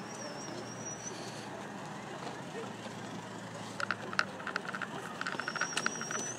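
Night street ambience: a steady traffic hum with indistinct voices. A faint high wavering whistle sounds twice, for about a second each, near the start and near the end, and a run of light clicks and taps comes in the second half.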